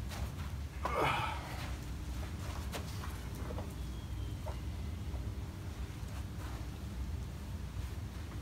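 A man's short, strained breath as he lifts a heavy potted plumeria, about a second in. Then a few faint knocks as the plastic pot is set on a wall pedestal and adjusted, over a steady low rumble.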